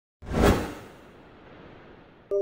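A whoosh sound effect for an animated logo intro: one swell of rushing noise that peaks about half a second in, then dies away into a faint hiss.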